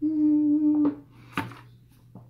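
A woman's steady closed-mouth hum, one held note for about a second, while she drinks from a plastic water bottle, followed by two short sharp clicks.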